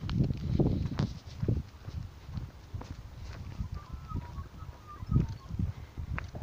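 Footsteps of a walker and a leashed dog on a rough sealed road, heard as irregular low thuds and scuffs.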